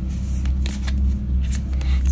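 A deck of oracle cards being shuffled by hand: an irregular run of quick card snaps and slides. A steady low hum runs underneath.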